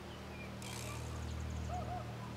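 Quiet outdoor ambience: a steady low hum, with a faint high ticking about a second in and two short faint chirps near the end.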